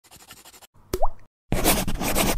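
Animated-intro sound effects: a faint scratchy texture, a quick pop with an upward-gliding tone about a second in, then a loud rushing swish from halfway through.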